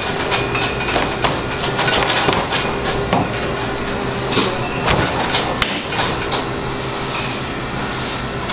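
A large mass of bread dough being pressed and patted by hand on a wooden pizza peel, giving scattered short knocks and thuds at irregular intervals. Underneath runs a steady mechanical hum of kitchen equipment.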